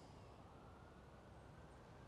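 Near silence: faint outdoor background hiss.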